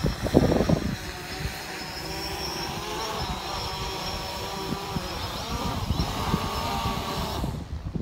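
Quadcopter drone hovering close by, its propellers a steady whine in several pitches that waver slightly as it moves, over gusty wind on the microphone. A short laugh comes about half a second in, and the whine cuts out near the end as the drone is caught by hand.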